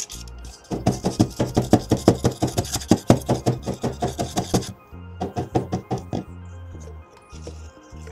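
Plastic cup of freshly mixed dental stone tapped rapidly on a tabletop, about seven or eight knocks a second, to bring trapped air bubbles to the surface: a run of about four seconds, then after a short pause a second run of about a second.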